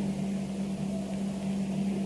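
A steady low electrical hum with background hiss, with no other distinct sound.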